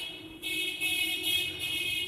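A steady high-pitched whistling tone with a hiss above it, dipping briefly about half a second in and then holding.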